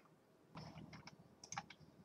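Faint computer keyboard typing: a handful of soft keystroke clicks, bunched between about half a second and a second and a half in, over near-silent room tone.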